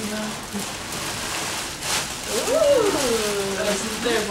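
Tissue paper rustling and crinkling as it is pulled out of a gift box, with a voice rising and falling briefly about two and a half seconds in.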